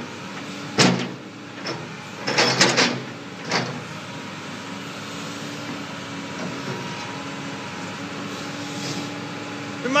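Excavator bucket striking and crushing a chunk of concrete over the machine's steady engine hum: a loud knock about a second in, a quick run of knocks around two and a half seconds, one more near three and a half seconds, then only the engine running.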